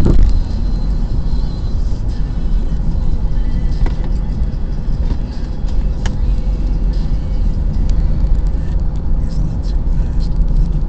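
Steady low rumble of a car being driven, heard from inside the cabin: engine and tyre road noise, with a couple of small clicks or knocks partway through.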